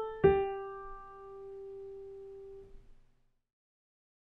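A single note struck on a piano keyboard, ringing and slowly fading for about two and a half seconds before the key is released.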